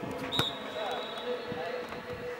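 A football kicked once with a sharp thud about half a second in, over distant players' voices and calls across the pitch. A faint, steady high tone holds on after the kick.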